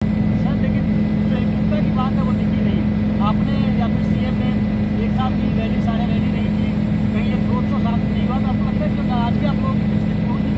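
Steady drone of a small aircraft in flight, heard inside its cabin, with a strong low hum; a voice is faintly audible under it.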